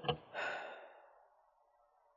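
A person near a microphone sighs: an audible breathy exhale that fades within about a second, after two brief voice sounds at the very start.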